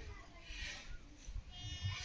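Faint outdoor ambience with a low wind rumble on the microphone, and a short bleating animal call near the end.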